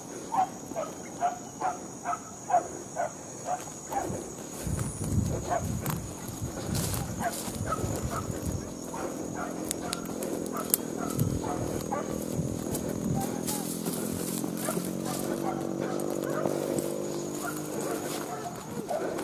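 Hunting dogs barking in a quick run of about two barks a second for the first few seconds. Longer, drawn-out howls that rise and fall in pitch follow in the second half.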